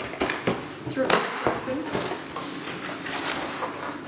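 Cardboard toy box being pulled open by hand: irregular scraping, rustling and sharp clicks of the cardboard lid and inner packaging.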